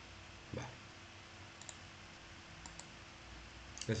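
Faint computer mouse clicks: two quick pairs of light clicks about a second apart, over a low steady hum.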